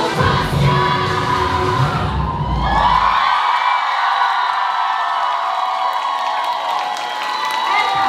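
A K-pop dance track with a heavy bass beat ends abruptly about three seconds in. The audience then cheers, with high-pitched shouts and whoops.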